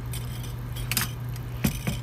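A pot of soup broth with radish chunks bubbling at a boil, with a few sharp clinks about a second in and near the end, over a steady low hum.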